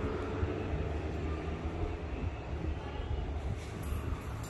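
Steady low rumble with a faint hiss above it, background noise with no distinct events.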